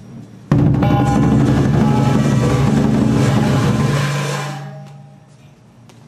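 Southern Chinese lion dance percussion: a large lion drum beaten rapidly with crashing cymbals. It starts suddenly about half a second in and fades out after about four seconds.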